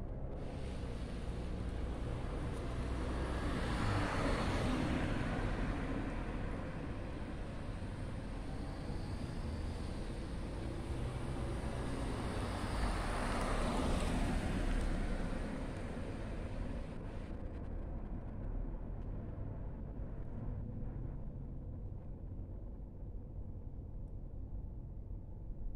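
Road traffic: a steady low rumble, with two vehicles passing, the noise swelling and fading about four seconds in and again around thirteen seconds.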